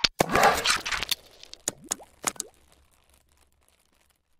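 Logo-animation sound effects: a sharp click, then a burst of noise about a second long, then a few quick pops, two of them rising in pitch, fading out by about three seconds in.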